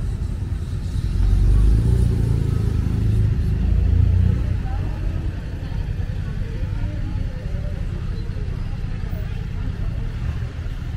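Road traffic passing close by: car and van engines with a low rumble, loudest a second or two in and easing off after about four seconds.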